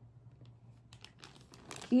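Clear plastic packaging crinkling and rustling in a hand, a series of small crackles starting about a second in.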